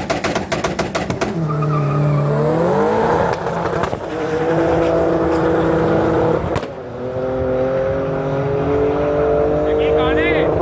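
Turbocharged drag cars launching off the line. A rapid popping, about eight pops a second, from an engine held on its launch limiter stops about a second in, and engine revs climb hard as the cars pull away. The note dips with gear changes at about three and again at about seven seconds.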